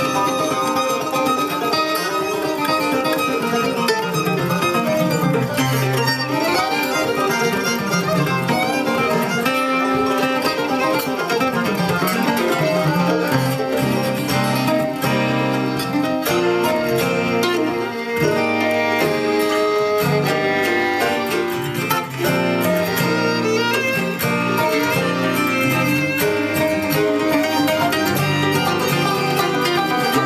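Acoustic string band playing an instrumental bluegrass/old-time tune, with fiddle, mandolin and banjo together.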